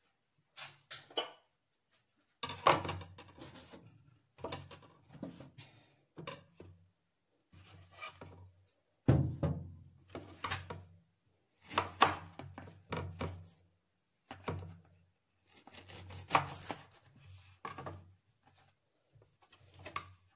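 Knife and plantain knocking and scraping on a plastic cutting board in irregular clusters, with short silences between, as the plantain is cut and handled.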